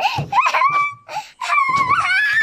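A young boy's high-pitched playful squeals: two drawn-out cries, the second coming near the end.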